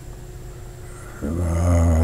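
A man's low, drawn-out hesitation sound, a held "uhhh" while he searches for a word, starting a little over a second in after a short quiet pause.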